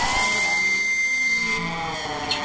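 A steady high tone over a hissing wash, slowly fading away.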